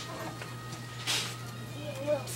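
Faint voices over a low steady hum, with a short hissing noise about a second in.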